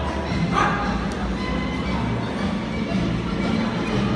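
Music playing over a steady low hum.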